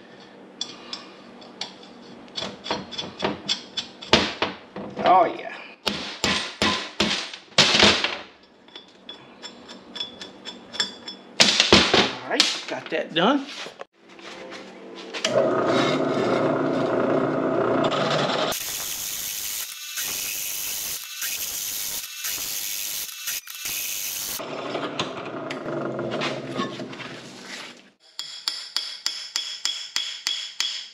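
Metal clinks and knocks as a cast wheel hub and its studs are handled on a steel workbench. Then a benchtop drill press runs for about thirteen seconds while drilling out stud holes in the cast hub, turning harsher and hissier in the middle as the bit cuts. Near the end comes a quick run of hammer taps as studs are driven into the hub.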